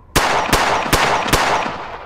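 Four pistol shots in quick succession, evenly spaced, each with a sharp crack and an echoing tail that fades away after the last.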